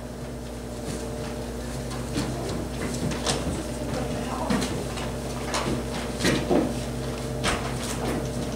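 Irregular footsteps and light knocks, roughly one a second, over a steady low electrical hum.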